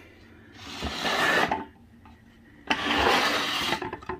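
Two swishing, rustling noises about a second long each, the second starting a little under three seconds in.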